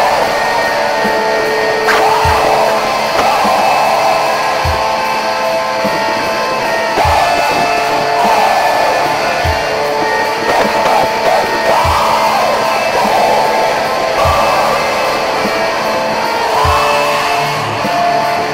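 Black metal: a dense wall of distorted guitars held over a slow, steady bass-drum beat, about one hit every two and a half seconds.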